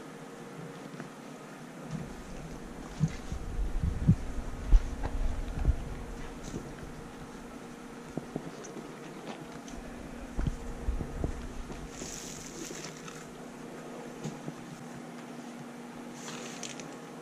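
Fleece cage liners being handled and laid out: fabric rustling with soft bumps and low thuds, heaviest between about two and six seconds in and again around ten seconds, and a brief swish of fabric near the end, over a faint steady hum.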